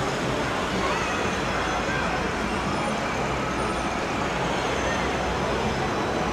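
Street traffic at an intersection: cars driving past in a steady wash of road noise, with people's voices faintly mixed in.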